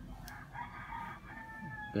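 A rooster crowing faintly: one crow of about a second and a half that ends on a held note, with a faint click just before it.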